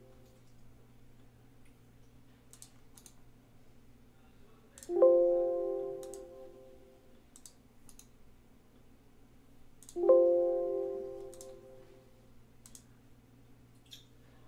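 Two electronic computer alert chimes about five seconds apart, each striking suddenly and ringing out over about two seconds. Faint mouse clicks fall between them.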